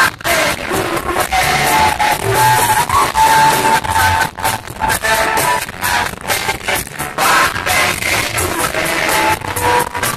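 Live band playing amplified through a PA, with electric guitar, keyboard and a steady drum beat.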